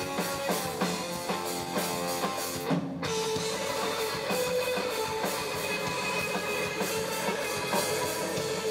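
Live rock band playing an electric guitar over a drum kit. It starts with rhythmic chords struck in time with the drums, breaks off for an instant about three seconds in, then moves to sustained guitar notes over the band.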